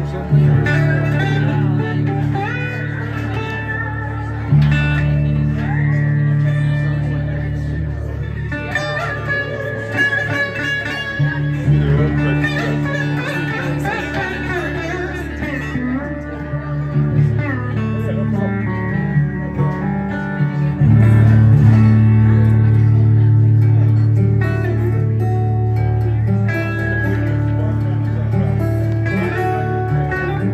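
A metal-bodied resonator guitar and a fingerpicked acoustic guitar playing an instrumental passage together, with sustained bass notes under picked melody lines, some notes gliding in pitch. The bass gets louder from about two-thirds of the way in.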